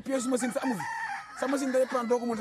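Men laughing loudly in repeated bursts, scornful laughter at an alibi they do not believe.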